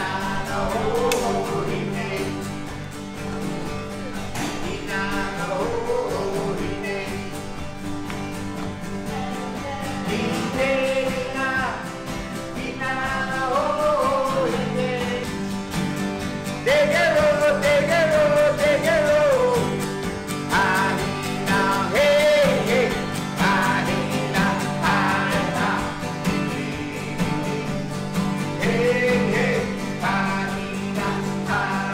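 Live song with a man's voice singing non-English lyrics over strummed acoustic guitars, in a country two-step feel.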